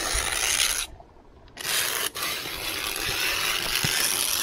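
A metal rod's point scratching lines into pond ice, scoring the rings of a curling target: a harsh, rasping scrape, broken by a short pause about a second in before a longer second stroke.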